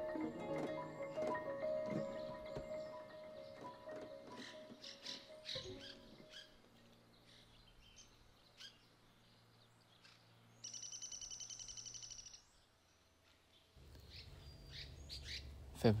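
Mallet-toned music like a marimba fading out over the first several seconds, with short bird chirps throughout. About two seconds of a high, rapidly pulsed bird trill come in the middle. A low outdoor background starts near the end.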